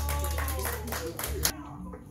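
A few people clapping together in applause, quick, even claps with voices over them, stopping about a second and a half in.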